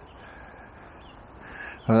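A crow caws faintly once near the end, over a low steady background hiss.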